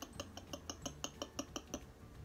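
A small stick stirring in a small cup, clicking against its side in quick, even light clicks about six a second, which stop near the end.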